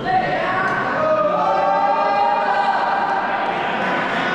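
A group of voices chanting together in a sung unison, with the pitch stepping up and down over several held notes.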